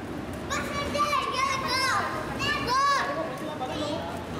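Small children's high-pitched voices calling out and chattering, in two short stretches over the first three seconds, over street background noise.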